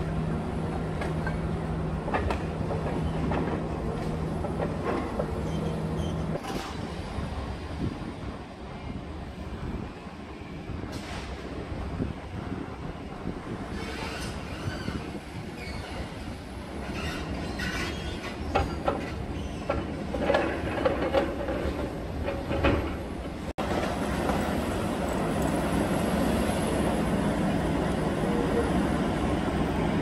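Hydraulic demolition excavator working on a concrete building: a steady engine rumble with a faint high hydraulic whine, broken by sharp cracks and clatters as concrete is crushed and rubble falls. The knocks come more often in the second half.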